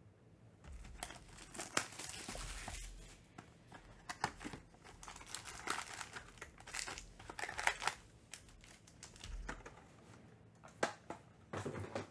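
A cardboard trading-card hobby box being opened and its foil-wrapped card packs pulled out and stacked. The foil wrappers crinkle and rustle in bursts, with light taps and clicks, then a quieter stretch and a few more taps near the end.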